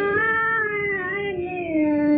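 A woman singing a Hindustani raga in a slow, wordless vocal line: one long held vowel that rises a little, then glides slowly down, with a new note starting near the end.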